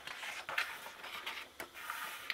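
A hardcover picture-book page being turned by hand: a faint rustle of paper with a few light clicks.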